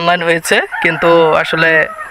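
A man talking, with a rooster crowing behind him.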